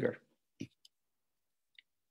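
The end of a man's spoken word, then quiet broken by a few faint short clicks, heard over a video-call connection whose noise suppression leaves the pauses dead silent.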